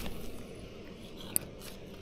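A cast with a light spinning rod and reel: quiet handling and line noise, then one sharp click a little over a second in, typical of the reel's bail snapping shut.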